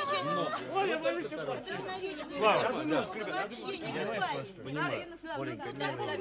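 Several people talking and exclaiming at once in lively, overlapping chatter, with one voice rising loudly about two and a half seconds in.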